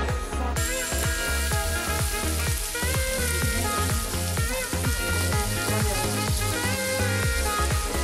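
Food sizzling in a pan over an open wood fire, the sizzle starting about half a second in, with background music with a steady beat playing throughout.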